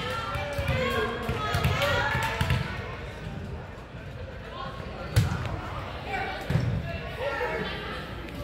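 A volleyball bounced several times on a hardwood gym floor, about two bounces a second, as a server readies to serve, then a sharp smack a little past five seconds in. Voices chatter throughout.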